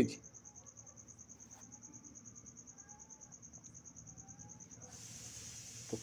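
Faint, steady, high-pitched insect trill made of rapid, even pulses, over a low hum.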